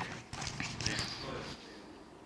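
A congregation shifting in wooden pews, with scattered knocks, shuffles and rustles as people begin to rise to their feet. Most of the knocks fall in the first second, with a low murmur of movement after.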